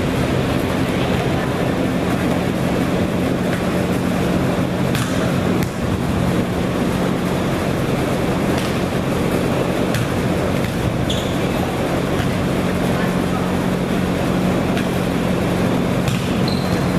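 A steady, loud machine hum and rumble, with a few faint thuds of a volleyball being struck in passing and setting drills.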